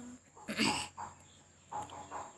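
A woman's sung note breaks off at the start. A few short, faint animal sounds follow, the loudest about half a second in with a brief bending pitch.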